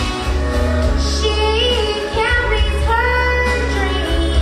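A girl singing a country ballad into a handheld microphone over instrumental accompaniment with a steady low bass, drawing out long sliding, held notes.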